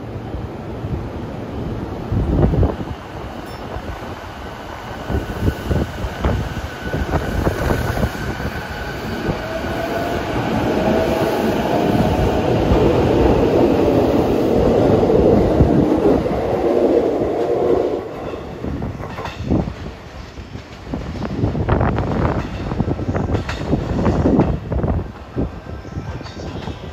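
E233-series electric multiple unit pulling out of a station platform: its traction motor whine rises as it gathers speed and the wheel and car noise swells as the cars run past. Later the sound drops and gives way to sharp rail clacks, as a train comes over points.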